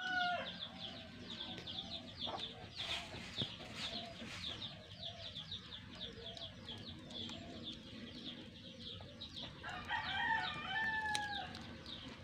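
Chickens clucking, with a rooster crowing about ten seconds in, over a fast, steady run of high chirping. A few sharp pops stand out along the way.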